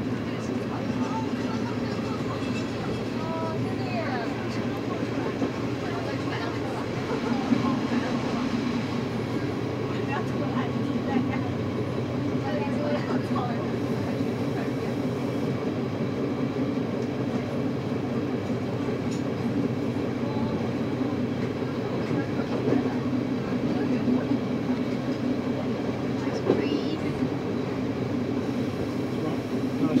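Berner Oberland-Bahn narrow-gauge passenger train running steadily, heard from inside the carriage: a continuous rumble of the running gear, with a few sharp clicks spread through it.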